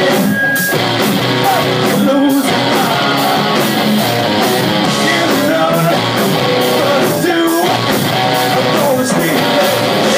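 Live rock band playing: electric guitars and drums with steady cymbal hits, and a singer's voice in places.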